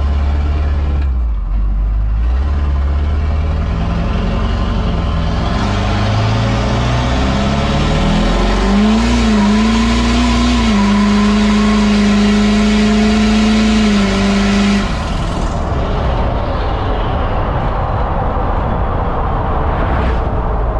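Tuned turbo-diesel pickup engine, which the owner rates at 700–800 hp, pulling at full throttle. Its pitch climbs in steps through the gears, holds a steady note, then eases off about 15 seconds in. It is heard from the open truck bed with wind rushing past the microphone.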